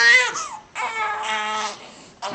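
Infant crying while being swaddled: a cry that breaks off about half a second in, then a second, longer cry after a short gap.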